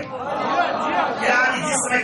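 A man speaking through a microphone, his voice amplified over a PA.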